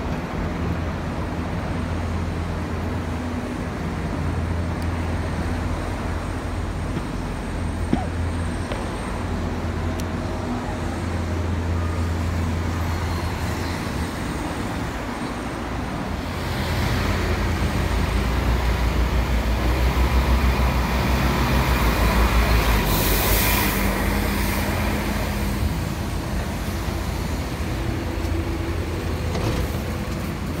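Road traffic and a diesel bus pulling in, its low engine rumble swelling for several seconds, with a short sharp pneumatic air hiss from the bus's brakes or doors late on. A steady low hum runs underneath before the bus arrives.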